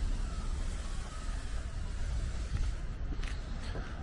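Outdoor background of steady road-traffic hiss, with a low, uneven rumble of wind on the microphone.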